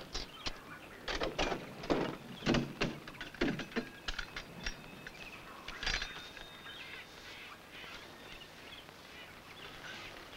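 A run of short metallic knocks and clanks, the car's rear deck lid being opened and tools handled for a tire change. About six seconds in a faint, thin high whistle sounds for a couple of seconds.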